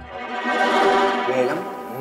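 Background music: a held chord of several sustained tones that swells up to a peak about a second in and then fades away.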